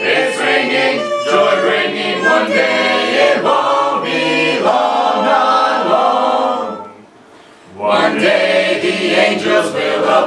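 Church choir of mixed men's and women's voices singing a gospel song in harmony, breaking off for about a second near seven seconds in before coming back in together.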